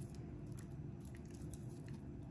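Quiet room tone with a steady low hum and a few faint light clicks from a cracker being handled between long fingernails.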